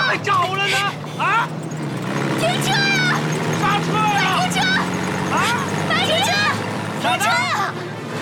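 People shouting over the steady low drone of an old military truck's engine.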